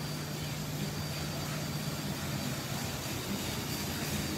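Steady background noise of a large workshop: a constant low hum under an even hiss, with no sudden sounds.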